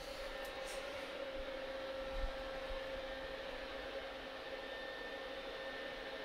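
Steady low hiss with a faint steady hum from powered-up electronic test bench equipment, with a small brief knock about two seconds in.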